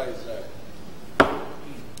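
One sharp knock a little past halfway through, with faint voices just at the start.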